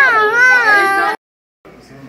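A young child's loud, high-pitched wailing cry, wavering up and down in pitch, that cuts off suddenly just over a second in.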